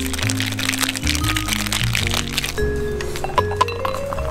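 Background music with a bass line, over the rapid rattling of ice in a metal cocktail shaker for roughly the first two and a half seconds.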